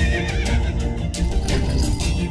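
Loud dramatic soundtrack music with a horse whinnying near the start.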